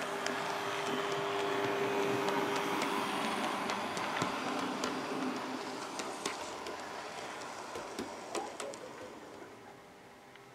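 Bachmann Class 150/2 model train running on its track: a faint steady motor hum with scattered clicks from the wheels on the rails, loudest about two seconds in and fading as it draws away.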